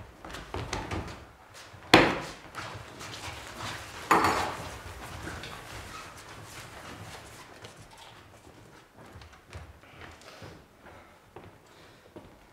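Performers moving and scuffling on a wooden stage around a table, with two loud thumps about two seconds apart that ring on in the hall, then softer knocks and shuffles.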